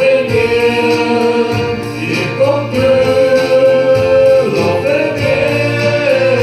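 Congregational worship song in Afrikaans, sung by several voices over instrumental backing, with long held notes.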